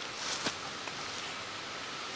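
Steady outdoor background hiss, with a short rustle and a light tap about half a second in as hands handle the tree-stand platform and its strap on the trunk.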